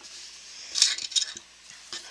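A quick cluster of light metallic clicks and clinks about a second in, from small craft scissors being handled on a tabletop.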